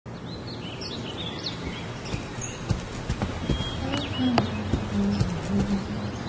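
Birds chirping over a steady background of room and outdoor noise, with a few light clicks. About four seconds in, a person says "no" and laughs.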